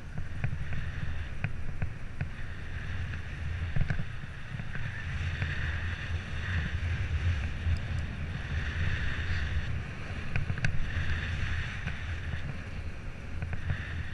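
Wind buffeting the microphone of a camera on a moving bicycle, a steady low rumble, with a fainter hiss that swells and fades and a few small clicks.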